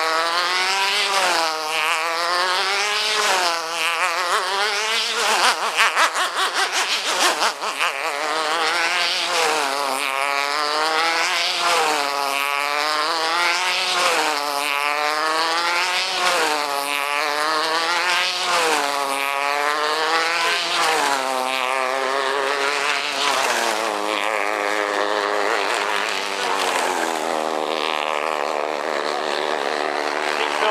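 A-class flash steam tethered model hydroplane running flat out, its engine note rising and falling in pitch about every two seconds as it laps the tether pole. There is a stretch of crackle about six seconds in. Near the end the rise and fall fades to a steadier note.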